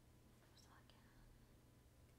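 Near silence: room tone with a faint low hum and a few very faint, brief soft sounds about half a second in.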